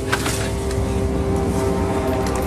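Steady, low droning suspense soundtrack with several held tones and a rumbling bass underneath, with one short sharp hit just after the start.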